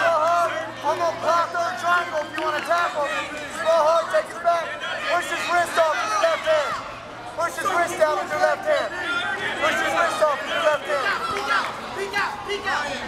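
Crowd babble: many overlapping voices of spectators and coaches talking and calling out at once, with no one voice standing out.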